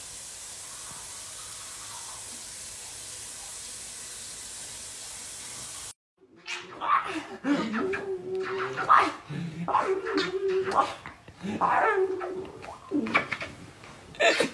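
A steady hiss for about six seconds, then after a sudden cut a baby laughing and squealing in repeated bursts, with some long high held squeals.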